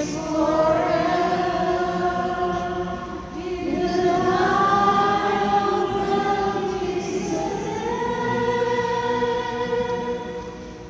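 A woman's soprano voice singing a responsorial psalm in slow, long held notes, stepping to a new pitch a little before four seconds in and again near eight seconds.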